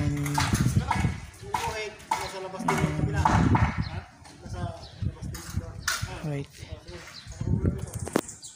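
People talking, probably in Filipino, with a couple of sharp knocks about five to six seconds in.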